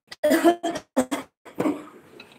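A person coughing several times, loud and close.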